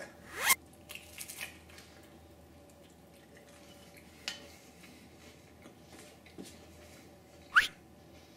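A crisp bite into a thin, well-cooked pizza crust, with a sharp crunch about half a second in, then a few small crackles and faint chewing. Near the end there is a brief high squeak that rises in pitch.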